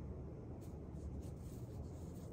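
Faint rustling of a linen cross-stitch piece held up in the hands, with a few soft scratchy touches over a low, steady room hum.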